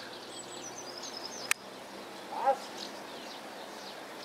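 Outdoor ambience with a steady background hiss and small birds chirping high and briefly during the first second or so. A single sharp click comes about one and a half seconds in, and a short pitched call just past two seconds.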